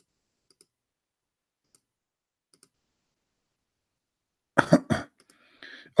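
A few faint clicks spread over the first three seconds, then a man gives two short, loud coughs about four and a half seconds in.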